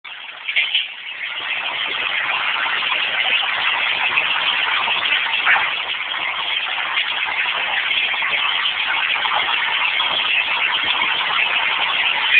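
Steady noise of motor vehicles running on a city street, with a brief louder moment about half a second in.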